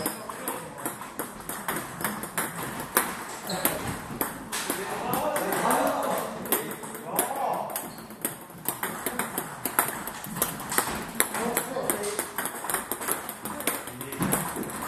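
Celluloid-style table tennis balls being struck by paddles and bouncing on tables: a constant stream of sharp, irregular clicks from several tables rallying at once, with players' voices under them.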